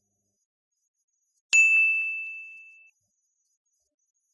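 A single bright, bell-like ding that starts suddenly about a second and a half in and rings out, fading away over about a second and a half.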